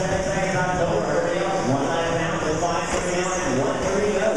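Electric short-course RC trucks racing on an indoor track, their motors whining and rising and falling in pitch, with knocks of the trucks on the wooden jumps.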